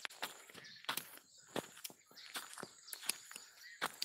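Footsteps of a person walking through forest undergrowth, irregular steps with leaves and brush rustling between them.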